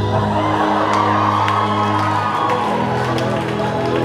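Recorded music with held, slow notes playing in an auditorium while the audience cheers and shouts. The cheering starts suddenly, swells and dies away about three seconds in.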